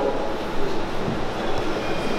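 Steady room tone: an even broad hiss with no clear speech.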